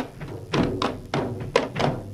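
Manipuri dhol barrel drums being beaten in a quick, uneven run of about seven strokes, each with a short pitched ring of the drumhead.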